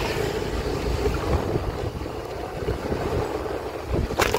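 Wind buffeting the phone's microphone during a ride on an open two-wheeler, over a steady low rumble from the moving vehicle.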